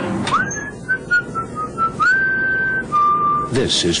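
A short whistled tune: a rising swoop, then a quick run of short notes, then two held notes, the last one lower.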